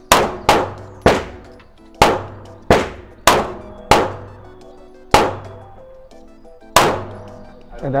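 CZ P-10 C compact pistol fired nine times at an irregular pace, shots about half a second to nearly two seconds apart, each sharp report echoing in an indoor range lane.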